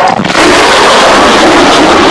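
F-35A's single afterburning turbofan (F135) heard very loud in a low high-speed pass: a dense, steady rushing jet noise that swells in just after a brief dip at the start.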